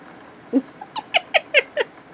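A woman's high-pitched giggle: a quick run of short falling notes, about five a second, starting about half a second in.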